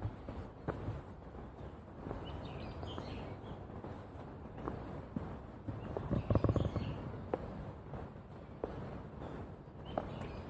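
Footsteps walking at an even pace on a garden path, with a brief louder scuffle about six seconds in. Faint bird chirps sound now and then over the outdoor background.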